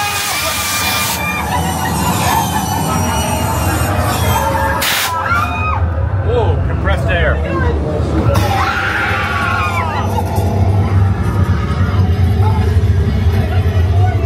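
Haunted-house walkthrough soundscape: a loud, low pulsing music bed, with screams and shouting voices rising over it about five seconds in and again about eight to ten seconds in. A hiss cuts off about a second in.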